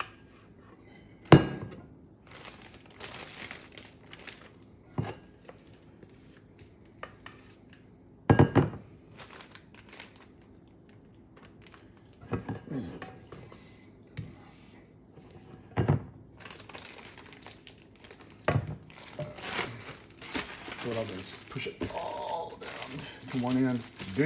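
A spatula scraping and knocking against a stainless steel mixing bowl while cream cheese icing is scraped into a plastic bag, with the bag crinkling. A few sharp knocks stand out, the loudest about a second in and about eight seconds in.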